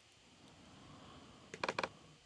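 Faint room tone, then a quick run of about four clicks at a computer, about a second and a half in, as folders are clicked through in a file dialog.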